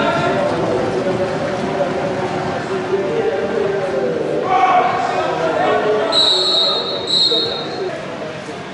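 A referee's whistle blown twice, two short blasts about a second apart near the end, over indistinct voices.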